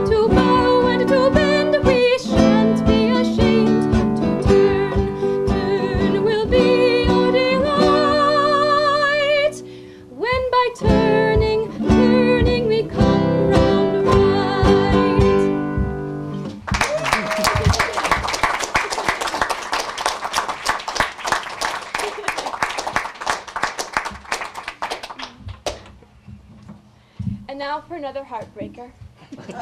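A woman singing a folk song with vibrato on her held notes, accompanied by a classical guitar. The song ends about 16 seconds in and is followed by audience applause that dies away after about ten seconds.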